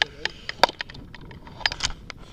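Handling noise from a hand-held action camera: irregular sharp clicks and knocks against the camera body, the loudest about half a second in and near the end.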